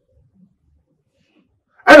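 Near silence, a pause in speech, then a man's voice starts speaking loudly near the end.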